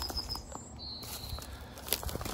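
Quiet outdoor background with two faint, thin high-pitched calls from a small animal, each held about half a second, one just after the start and one about a second in, and a few soft clicks.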